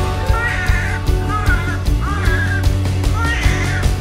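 Background music with a steady beat, over which a newborn baby cries in three short wavering wails.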